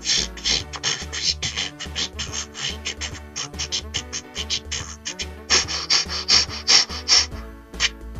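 Crosscut saw sawing through a tree trunk in quick back-and-forth strokes, getting faster and louder for the last couple of seconds before it stops. Background music plays underneath.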